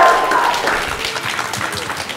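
Studio audience applauding, with a held musical note fading out about half a second in.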